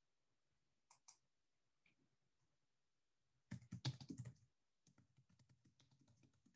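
Computer keyboard typing: two light keystrokes about a second in, a quick flurry of keystrokes about three and a half seconds in, the loudest part, then a run of lighter, rapid keystrokes.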